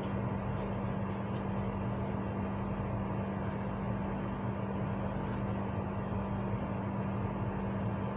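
A steady low hum with an even background hiss, unchanging throughout.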